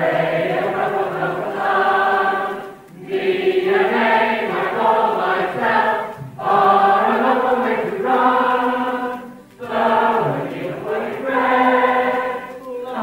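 A chorus of many voices singing together in held phrases of about three seconds each, with short breaks between them.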